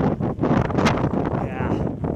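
Strong wind buffeting the phone's microphone, a loud, uneven low rush, with a person's voice briefly near the end.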